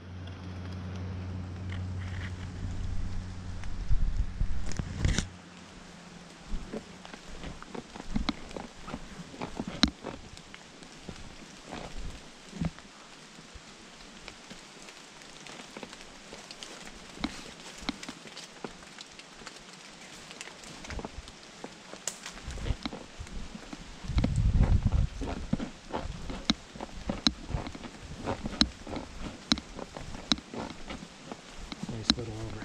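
Footsteps crunching through dry fallen leaves, with irregular crackles and clicks. A low steady hum runs through the first few seconds, and a louder low rumble comes about three-quarters of the way through.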